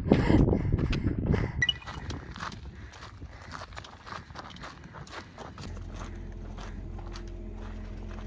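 Footsteps on loose stone and the tips of trekking poles clicking against rock in a walking rhythm, loudest in the first two seconds. From a little past the middle, a steady low hum runs underneath.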